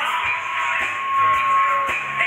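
Dance music playing, with a steady beat of about two beats a second and a long held high note running through it.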